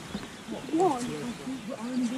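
Quiet background voices of a small group talking in a lull, with one voice rising and falling in pitch about halfway through.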